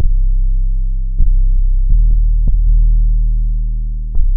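Electronic music: a loud, deep bass drone with sparse, irregular clicks over it; the bass swells again about a second in.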